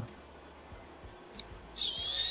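Quiet with a faint click, then near the end a small electric screwdriver starts with a high-pitched whine, backing out a screw that holds the cordless phone handset's circuit board.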